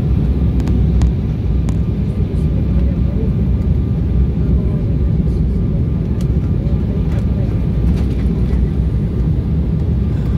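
Cabin noise of an Embraer 190 airliner on its approach: a steady, loud low rumble of the twin turbofan engines and airflow, heard inside the cabin. A few faint clicks come in the first two seconds.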